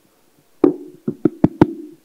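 Handheld microphone being handled and tapped through the PA: one sharp knock about a third of the way in, then four quick knocks in about half a second, with a low hum running under them.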